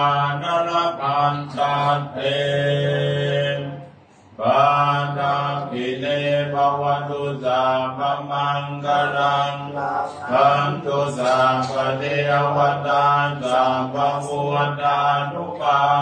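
Buddhist monk chanting Pali blessing verses (paritta) in a steady, near-monotone recitation, with a brief break for breath about four seconds in.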